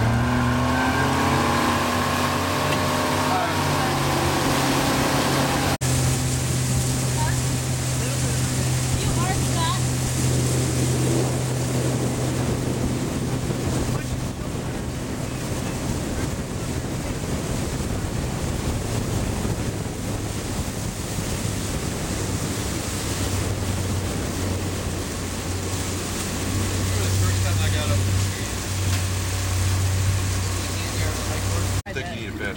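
Motorboat engine pulling a wakeboarder: it works harder and climbs in pitch over the first few seconds, then runs steadily at towing speed. Wind and water noise from the moving boat run throughout.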